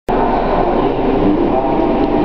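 Passenger train pulling slowly out of the station, a steady running noise heard from inside the carriage.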